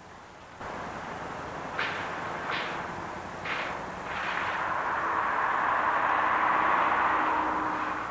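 Flyer electric trolley bus moving off along the street, with a few sharp cracks about two, two and a half and three and a half seconds in. After that a broad rushing noise swells, loudest near the end, with a faint low hum under it.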